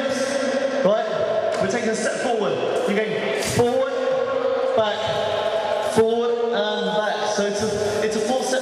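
A man chanting into a microphone over a PA system, his voice held on long, steady notes with short breaks between phrases.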